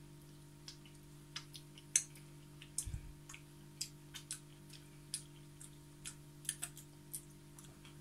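Someone licking chocolate off his fingers: faint, irregular little mouth clicks and smacks over a steady low room hum, with one soft low thump about three seconds in.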